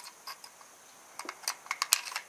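Small metal clicks and taps of a Beretta 92FS pistol being handled: a few faint ticks, then a quick cluster of sharp clicks in the second half.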